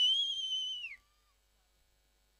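A single long, high whistle, held steady with a slight waver, then falling in pitch as it cuts off about a second in.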